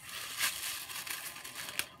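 Plastic bag crinkling as it is handled, with a sharper rustle about half a second in and another near the end.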